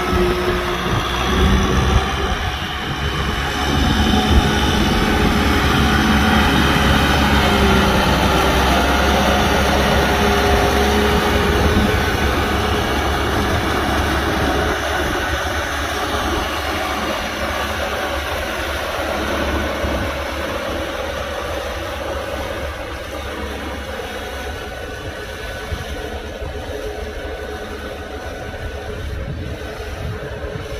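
Kubota M6040 SU tractor's four-cylinder diesel engine running steadily, growing gradually quieter over the second half.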